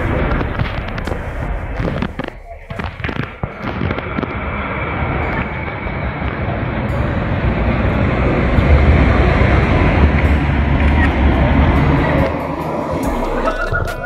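Street traffic noise: a city bus passing close, a deep rumble that builds through the second half and drops off about two seconds before the end.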